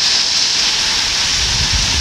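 Heavy storm rain pouring down steadily. A low rumble comes up about one and a half seconds in.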